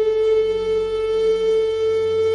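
Film score music: one long held note from a flute-like wind instrument, steady in pitch.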